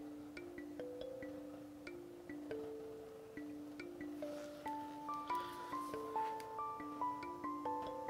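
Background music: a soft, unhurried melody of single struck notes, lower notes at first, with a higher line joining about halfway through.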